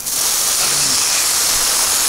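Water hissing out under full pressure through the nearly closed brass shut-off valve of a Pocket Hose Top Brass expandable garden hose, forced into a fine mist spray. A loud, steady high hiss that jumps up just after the start.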